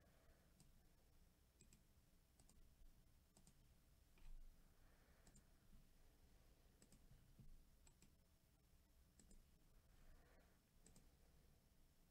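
Near silence: room tone with faint, irregular small clicks about once a second.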